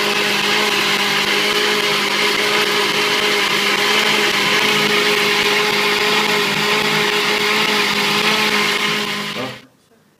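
Kenwood countertop blender running steadily at full speed, its motor giving a constant hum over the churning of a liquid milk-and-yogurt smoothie. The motor cuts off suddenly about nine and a half seconds in.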